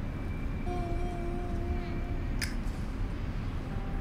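Steady low outdoor background rumble, with one soft held musical note lasting about two seconds from about a second in, then a brief hiss.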